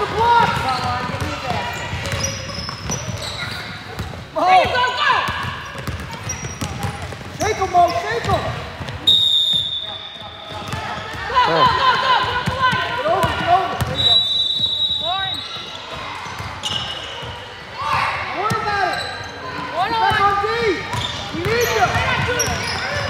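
Gym noise during a basketball game: indistinct shouts from players and spectators, with a ball dribbling and sneakers squeaking on the hardwood, echoing in the large hall. Two brief high steady squeals come about 9 and 14 seconds in.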